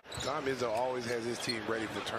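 Basketball broadcast audio: a commentator talking over arena noise, with a ball bouncing on the hardwood court.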